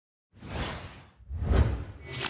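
Two whoosh sound effects for an animated logo. The first swells up about a third of a second in and fades, and a second, louder whoosh follows about a second later.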